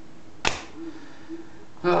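A single sharp click about half a second in, as a card in a hard plastic case is set down on a table.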